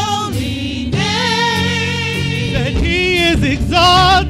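Gospel music: sung phrases with long notes held in vibrato, over a steady sustained low accompaniment.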